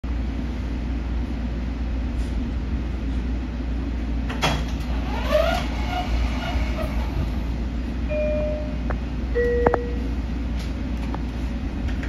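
Inside a Long Island Rail Road electric railcar: the car's steady low rumble and hum, with a sharp clack about four and a half seconds in, a few brief squeals just after, and two short tones near the eight- and nine-and-a-half-second marks.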